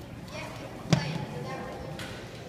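A single sharp thump about a second in, over faint talking.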